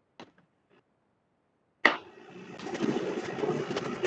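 Video-call audio dropping out: dead silence with a faint click, then a sharp click about two seconds in as the presenter's microphone comes back. A rising rustle of microphone and room noise follows.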